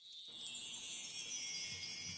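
A shimmering run of high chimes opening a recorded OPM ballad, ringing on and slowly fading.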